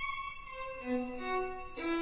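Live string ensemble of violins, violas, cellos and double bass playing contemporary music: several long held notes enter one after another at different pitches and overlap, then a denser chord comes in sharply just before the end.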